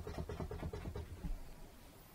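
A bristle brush dabbing on a stretched canvas: a quick run of soft taps, several a second, that stops a little over a second in.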